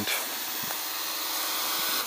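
SkyCity TKKJ TK112W folding mini quadcopter's motors and propellers whirring steadily as it descends under auto-land, growing slightly louder as it comes down.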